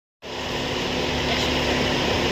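Steady hum of a running engine or similar machine, with a constant low tone, coming in abruptly just after the start.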